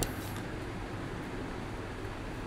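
Steady low room hum and hiss, with faint strokes of a pen writing on paper.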